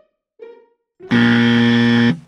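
Two soft plucked notes of background music, then about a second in a loud, flat 'wrong answer' buzzer sound effect sounds for about a second. It marks the wrong way of doing something, here a mask worn below the nose.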